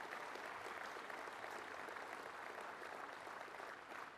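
An audience applauding: a steady patter of many hands clapping, easing off slightly near the end.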